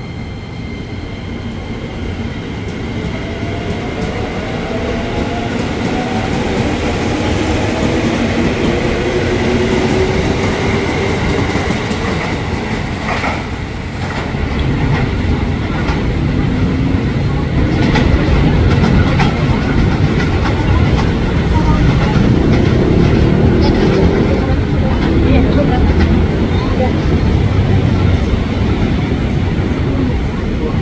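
JR 205-series electric commuter trains moving through the station, a steady loud rumble with wheels clattering over the rail joints. Early on, the motors of the train pulling out give a whine that climbs in pitch as it gathers speed. From about halfway through, the noise builds louder as a second train runs in.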